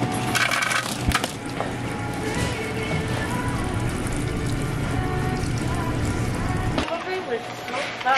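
A soda fountain's water nozzle pouring a steady stream into a plastic cup of ice; the pour cuts off suddenly about seven seconds in as the lever is released.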